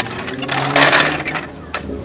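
Hydraulic floor jack being pulled out from under a lowered trailer: a click, then about a second of rattling from its metal body and wheels, and another sharp click near the end.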